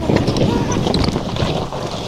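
Wind buffeting the microphone close to the ground, a rough, steady noise.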